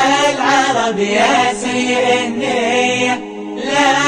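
Arabic song, a drawn-out, ornamented vocal line gliding up and down over a steady held drone, with a short breath-like dip near the end.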